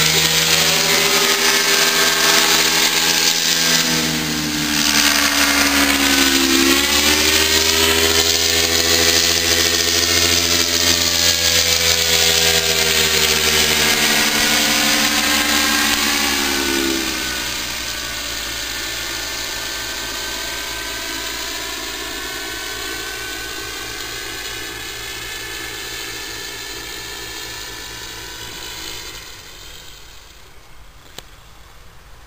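Paramotor engine and propeller droning as the powered paraglider flies close by, its pitch sliding down and up as it passes and turns. After about 17 seconds it grows fainter as the paraglider flies away.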